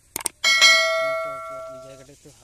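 A metal bell struck once, ringing with a clear tone of several steady overtones that fades away over about a second and a half. It is preceded by two quick clicks.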